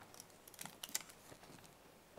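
Faint clicks and rustles of a paper envelope being opened and the card inside handled close to a podium microphone, with the sharpest click about a second in.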